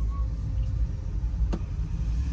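Low, steady rumble of an electric pickup, a GMC Hummer EV, rolling slowly, heard from inside its cabin, with no engine note. A single sharp click comes about one and a half seconds in.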